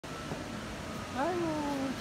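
A woman's drawn-out exclamation of wonder, 'aiyu', rising and then slowly falling in pitch, over steady indoor room noise.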